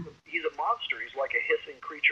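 Speech only: a person talking.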